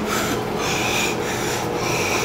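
Six-week-old pit bull puppies scuffling in a tug of war, giving a repeated rasping about twice a second over a steady low hum.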